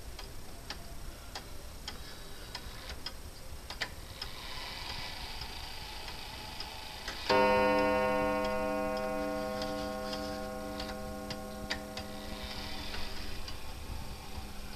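Wall clock with the crossed-arrows mark ticking steadily, then about seven seconds in striking once for the half hour as its minute hand is turned to the six; the struck tone rings on and fades slowly.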